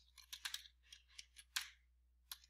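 Computer keyboard typing: a quick, irregular run of faint keystrokes, with one louder keystroke about one and a half seconds in.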